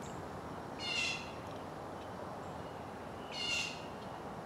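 A bird calling twice, about two and a half seconds apart, each call a short high-pitched note of about half a second, over faint outdoor background noise.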